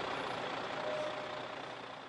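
Volvo FH12 lorry's diesel engine running as the truck moves slowly toward a police checkpoint, a steady rumble and road noise that fades out near the end.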